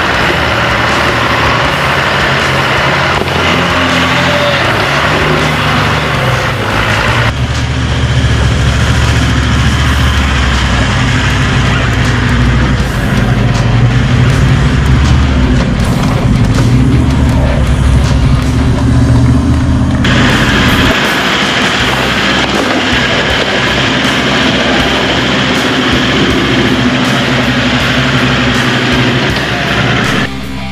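Four-wheel-drive engines working hard under load as the vehicles crawl up a steep, rutted creek-bank climb, with the sound changing abruptly twice where the shots change. Music plays underneath.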